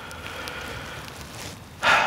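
Steady outdoor background noise, an even hiss with no distinct events, then a louder rush of noise near the end.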